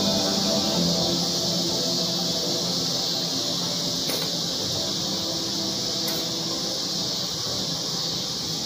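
A steady, high-pitched hiss throughout, with faint held musical tones fading out underneath it.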